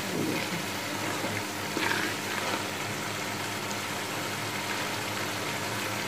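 Beef keema with green chillies frying in oil in a pot: a steady sizzle, with a low steady hum underneath.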